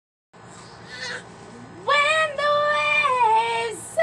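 A woman's voice singing long wordless notes: it slides up into the first note, then holds notes that step down in pitch over about two seconds.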